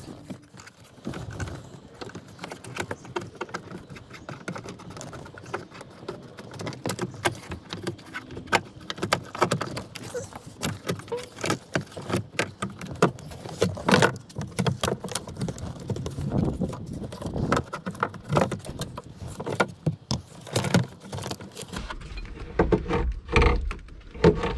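Irregular clicking, clinking and knocking as a seatbelt retractor assembly is unbolted and worked out of a pickup truck's door-pillar trim: tools and the belt's metal and plastic parts being handled.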